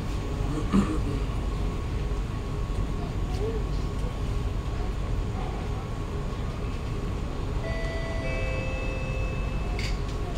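Inside a Kawasaki–CRRC Sifang C151A metro carriage standing at a platform with its doors open: a steady low hum from the stationary train, with a brief knock about a second in. Near the end a short electronic chime of steady stepped notes sounds for about two seconds, ahead of the doors closing.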